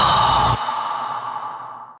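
Outro logo-sting sound effect: a sweep falls into a chord that cuts off about half a second in, leaving a ringing tone that fades out.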